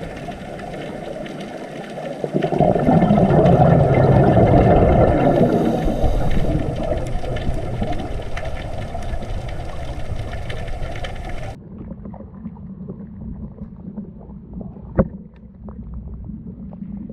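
Underwater rumble and hiss picked up by a camera, swelling loud about two and a half seconds in and slowly easing off. It then switches abruptly to a quieter, duller underwater noise, with one sharp knock about a second before the end.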